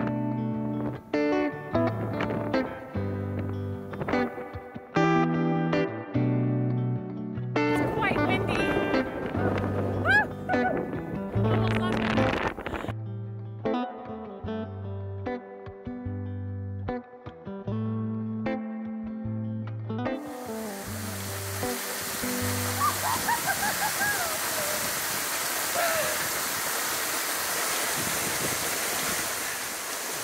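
Background music with guitar and a stepping bass line for about twenty seconds, then the steady rush of a waterfall for the rest.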